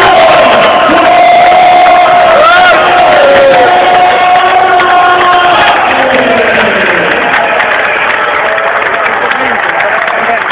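Large crowd cheering and shouting, many voices over one another, easing a little after about six seconds.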